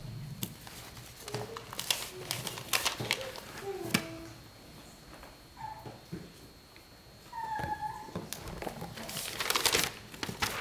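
Paper and pages rustling and tapping on a wooden lectern as notes are leafed through, with a denser run of page handling near the end. A few short, high squeaky tones come in between.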